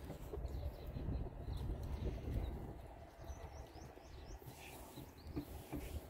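Quiet outdoor ambience: a low, unsteady rumble of wind on the microphone, with a few faint bird chirps about three to four seconds in.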